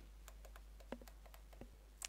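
Near silence with a few faint, sharp clicks, the clearest a little less than a second in.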